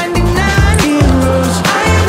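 Background music with a strong bass and a steady beat.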